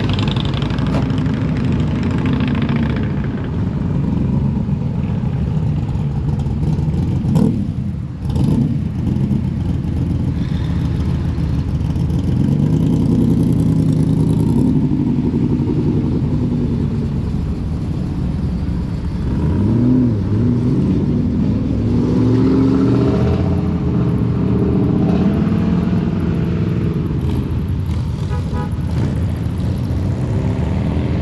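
Vehicle engines running and revving, their pitch rising and falling several times.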